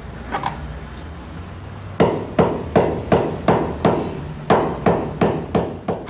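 A hammer beating a freshly stitched white leather sliotar (hurling ball) against a wooden block. The blows start about two seconds in and come evenly, about three a second. The hammering rounds the seams and sets the stitches.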